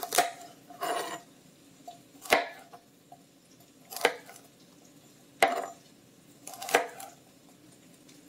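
Chef's knife slicing a celery stalk thinly on the diagonal on a plastic cutting board. Six slow, separate cuts, each a short sharp knock of the blade on the board, about one every one and a half seconds.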